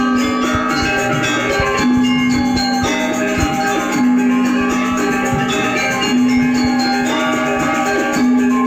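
Balinese gamelan music: bronze metallophones play a busy ringing melody over a low sustained note that sounds again about every two seconds.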